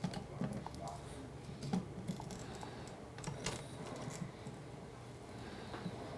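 Light, irregular clicks and taps of hand tools on a 3D printer hot end: a small combination wrench and groove-joint pliers knocking against the metal heater block as the wrench is fitted to loosen the nozzle.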